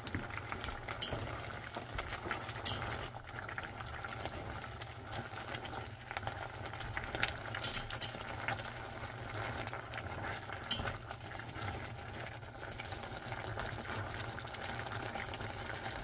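Water boiling in a stainless steel saucepan of leafy greens while wooden chopsticks stir them. A few light clicks of the chopsticks against the pot are heard now and then.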